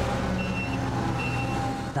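Forklift reversing alarm beeping, a single high tone repeating a little more than once a second, over the forklift's engine running.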